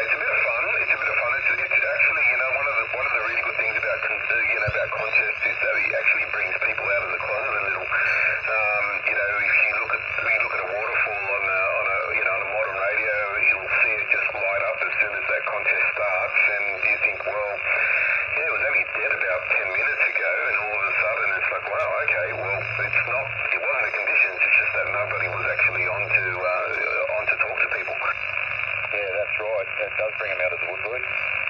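Single-sideband amateur radio voice heard through a Yaesu portable HF transceiver's speaker on the 40-metre band. Speech runs on without break over steady band hiss, with the narrow, thin tone of SSB audio.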